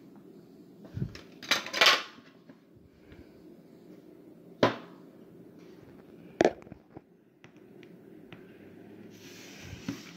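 Handling noises at a tabletop: a low thump about a second in, a brief scraping rustle just after, then two sharp knocks a couple of seconds apart, like a phone being handled and set down on the table.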